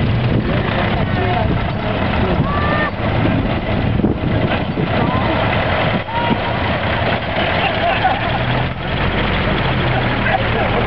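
Engines of 1920s–early 1930s American cars running as they drive slowly past, nearly drowned by heavy wind rumble on the microphone, with voices in the background.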